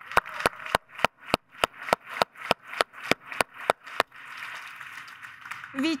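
Hand clapping close to the microphone, single sharp claps about three a second for about four seconds, giving way to softer, fainter applause just before speech resumes.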